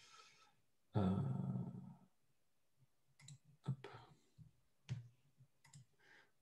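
A drawn-out spoken 'euh' about a second in, then several faint, scattered clicks of a computer mouse in the last three seconds.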